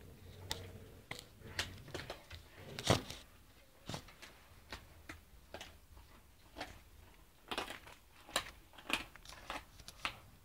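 Dog gnawing raw meaty bones: irregular crunching clicks and cracks, a few a second, with one loudest crack about three seconds in.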